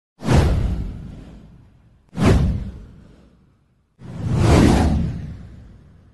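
Three whoosh sound effects with a deep low end. The first two hit suddenly and fade away over about a second and a half; the third swells up over half a second and then fades out.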